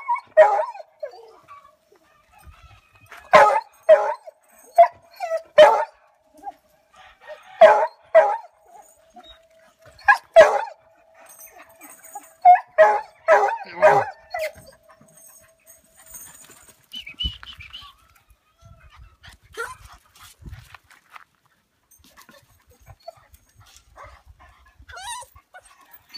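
Beagles baying: loud barks in clusters through the first fifteen seconds or so, with a long held howl running under them from about five seconds to about sixteen.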